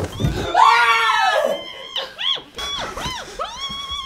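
A thump, then a loud, high scream lasting about a second, followed by a run of shorter rising-and-falling cries.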